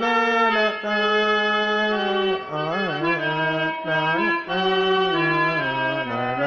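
Electronic keyboard playing a slow single-line melody in a reedy, harmonium-like voice: held notes that step from one pitch to the next, with a few quick pitch wavers and slides about halfway through.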